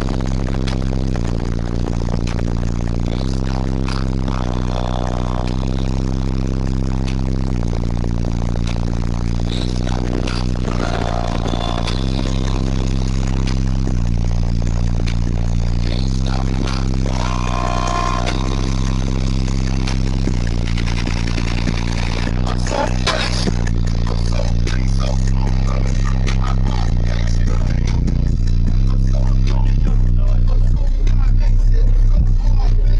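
Bass-heavy music played very loud through a car's competition audio system with URAL subwoofers. Deep bass notes shift every couple of seconds, with clicks and knocks scattered over them.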